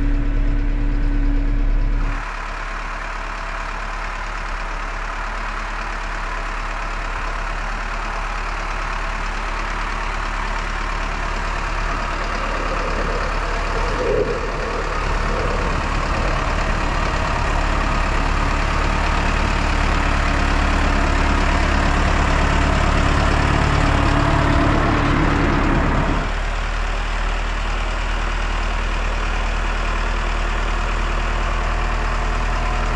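Valtra N123 tractor's four-cylinder diesel engine under load, driving through deep snow. For about two seconds it is heard from inside the cab. After that it is heard from outside as the tractor approaches, growing louder until it drops off suddenly near the end.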